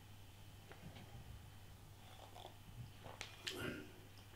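Faint sounds of a man drinking beer from a glass, sipping and swallowing, then a short breath out near the end as the glass comes down. A low steady hum lies underneath.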